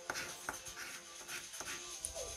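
A 50p coin scraping the silver coating off a scratchcard in short, intermittent strokes, over faint background music.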